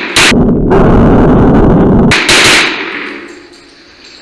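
Pistol shots from a 2011-pattern pistol in an indoor range: one shot a little after the start, a loud drawn-out rumble for about two seconds, then two quick shots close together and a fading tail.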